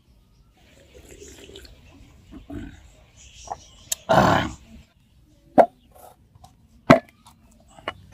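Large knife chopping into the husk of a young green coconut on a wooden chopping stump: three sharp strikes over the last few seconds, roughly a second apart. A loud, rough half-second burst of noise comes about halfway through.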